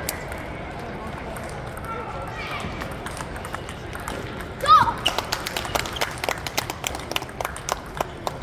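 Table tennis balls clicking off paddles and tables in a hall with several matches going. About halfway through there is a short, loud, high squeal, followed by a quick run of clicks.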